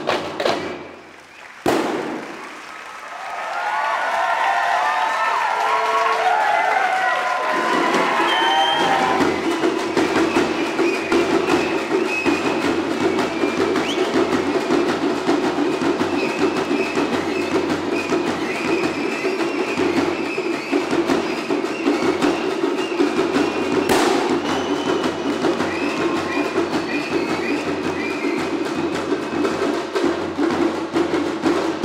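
Folk drums played in a steady, fast beat, starting after a brief lull about two seconds in and carrying on without a break. Wavering high-pitched tones sound over the first few seconds of the drumming.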